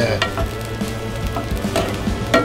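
Thinly sliced steak sizzling in a cast-iron skillet while metal tongs stir and turn it, with a few light clicks of the tongs against the pan.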